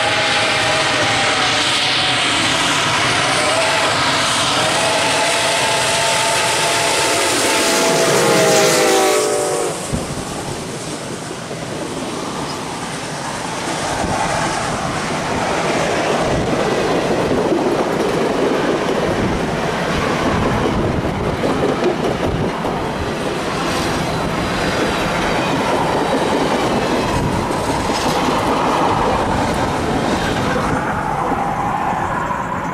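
Reading & Northern 425, a 4-6-2 Pacific steam locomotive, blowing its steel Reading six-chime whistle in a long chord as it approaches, the chord dropping in pitch as the engine passes at about nine seconds. After that, passenger cars roll by, with the steady clickety-clack of wheels over rail joints.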